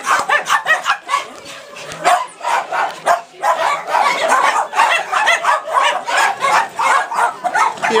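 Many small dogs barking at once, a dense run of overlapping barks with only brief lulls, about a second and a half in and around three seconds in.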